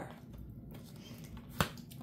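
Tarot cards being handled: a single sharp click of a card about one and a half seconds in, over faint room noise.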